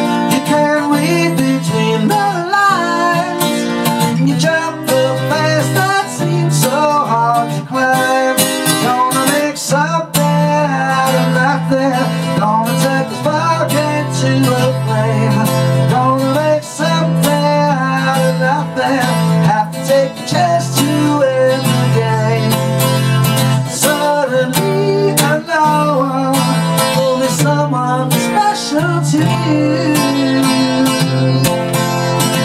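Acoustic guitar strummed with a steady rhythm, playing the song's chords.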